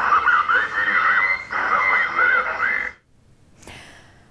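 A voice message played through a police car's roof loudspeaker, thin and tinny, urging residents to stay at home. It cuts off sharply about three seconds in, and a brief faint hiss follows near the end.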